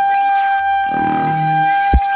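Flute holding one long steady note, processed with electronic effects, over a low accompaniment that swells about once a second. Faint falling glides sound high above, and a short low thump comes near the end.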